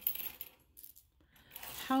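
Small metal costume-jewelry pieces clinking and rattling against each other as they are picked through by hand, densest in the first half-second, then a few lighter clicks.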